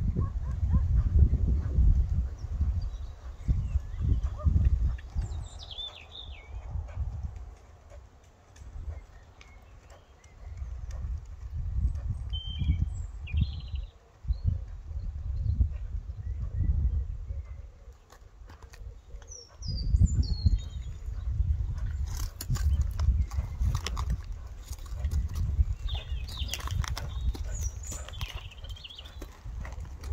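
Gusts of wind rumbling on the microphone, with birds chirping at intervals and a run of sharp clicks in the last several seconds.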